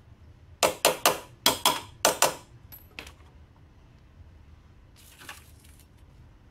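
Six sharp metallic clanks in quick succession about a second in, then two lighter clicks and a brief soft rustle near the end: steel hand tools knocking on the CVT pulley hardware while the scooter's transmission is being dismantled.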